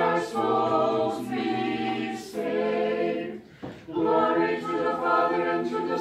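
A small church choir singing an Orthodox troparion a cappella, holding long drawn-out notes, with a brief breath break about three and a half seconds in.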